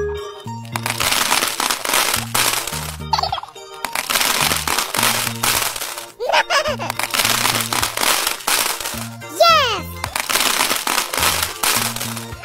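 Cartoon sound effect of many small balls pouring and rattling into glasses, four pours one after another, over a children's music track with a steady bass beat. A short gliding whistle-like sweep sounds in the gaps between pours.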